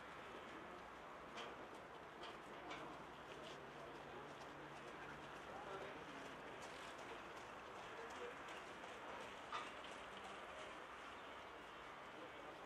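Faint outdoor background with birds calling and a few soft ticks, the sharpest near the end.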